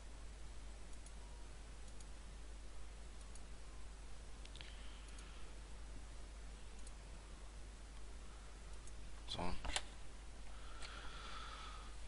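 Scattered computer mouse clicks, single and sparse, over a steady low hum and hiss. There is a louder quick cluster of clicks about nine and a half seconds in.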